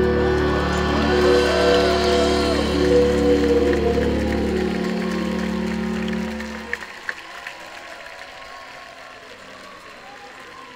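Dream-pop band playing live: held organ-like keyboard chords over a low bass drone, with a wavering melodic line in the first few seconds. The music stops about seven seconds in, and a few sharp clicks and quieter crowd applause follow.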